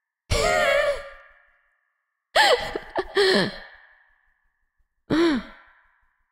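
A young woman's wordless, breathy vocal sounds: three short, sigh-like calls. Each starts suddenly and fades within about a second, and the middle one comes in two parts.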